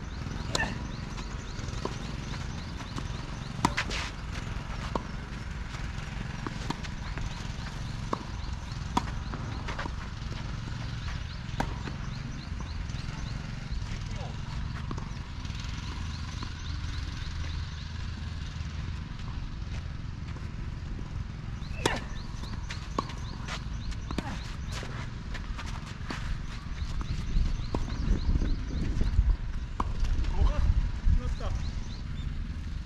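Tennis rally on a clay court: a serve struck about half a second in, then scattered sharp pops of a racket hitting the ball and the ball bouncing, the strongest about 4 s and 22 s in. Under them runs a steady wind rumble on the microphone, which grows louder near the end.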